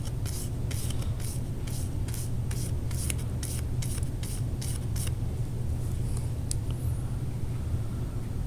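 Paintbrush dabbing and brushing black paint onto a cardboard star: a quick run of short brushing strokes, about three a second, that stops about five seconds in. A steady low hum runs underneath.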